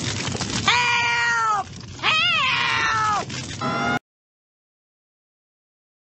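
An old woman's shrill cartoon voice crying out twice in long, drawn-out wails for help, each falling in pitch at its end, over dramatic orchestral music. The sound cuts off abruptly about four seconds in.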